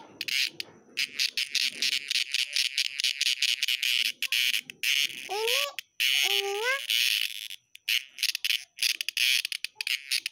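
A male of the large edible insects calling close up: a loud, rapid pulsing buzz in runs with short breaks. A child's brief voice sounds about five to seven seconds in.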